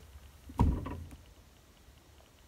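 A single dull, low thump about half a second in, dying away quickly, then quiet room tone.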